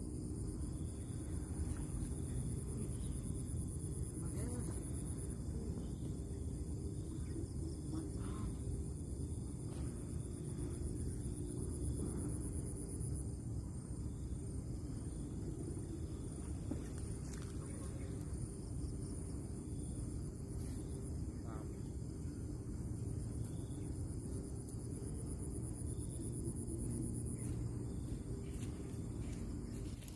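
Outdoor ambience: a steady high-pitched insect drone with short chirps repeating every second or so, over a constant low rumble.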